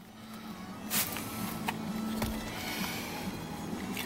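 Cleaner sprayed from a trigger spray bottle onto a vinyl door panel: a short burst of spray about a second in, then a fainter hiss, over a steady low hum.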